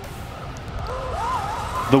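Electric drive motors of a small RC drift tank whining under throttle as it climbs a slope, the pitch rising and wavering through the middle, over a low wind rumble on the microphone.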